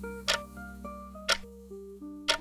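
Countdown timer ticking once a second, two sharp ticks, over soft background music of held notes.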